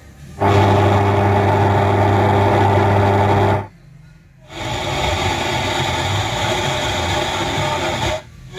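Factory radio of a 2013 Volkswagen Golf tuned to the AM band, playing through the car's speakers: a steady electrical buzz for about three seconds, a brief cut-out as it retunes, then steady hissing static.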